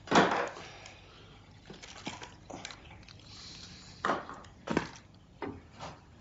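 Toiletries and a razor being handled at a washbasin: a loud sudden clatter just at the start, then a series of short knocks and clicks about a second apart.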